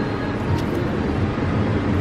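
Steady background noise with a low rumble and no single event standing out.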